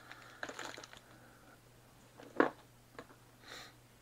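Light handling noises on a workbench: a few soft clicks and rustles, one sharper click about two and a half seconds in, and a soft rustle near the end, over a faint steady low hum.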